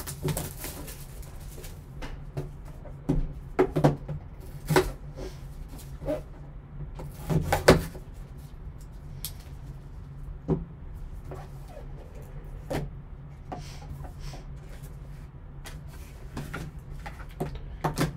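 Gloved hands tearing the plastic shrink wrap off a cardboard trading-card box and lifting off its lid: scattered crinkles, scrapes and light knocks over a low steady hum.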